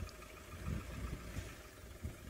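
Low, uneven rumble of an engine idling, most likely the safari vehicle the cheetahs are being filmed from.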